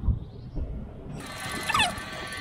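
Land Rover Discovery air suspension responding to the key-fob button combination: a steady hiss with a whine in it sets in suddenly about a second in. A short, high, falling call sounds near the end.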